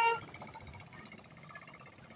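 Faint street background noise during an outdoor march, opened by one short, high pitched tone about a fifth of a second long.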